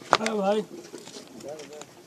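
A sharp click of metal parts being handled, then a pigeon's low cooing call lasting about half a second.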